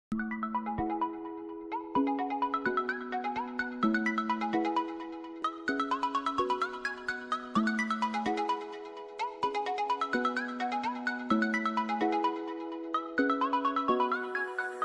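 Background music: a melody of short, quick notes that repeats a short phrase about every two seconds.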